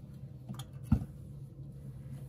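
A small iron being pressed down on a padded pressing board, with one sharp thump about a second in and a faint click before it, over a low steady hum.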